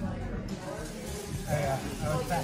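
Indistinct talking over the background chatter of a busy gym, with a nearby voice louder near the end.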